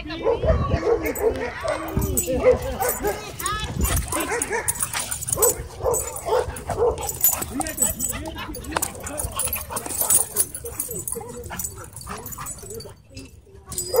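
Dogs play-wrestling and vocalizing: yipping, whining and barking. Rising-and-falling whines come in the first few seconds, then quick repeated yips, with a brief lull near the end.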